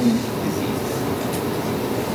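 Steady background noise in a lecture room: an even, continuous hiss and hum with no speech, at an unchanging level.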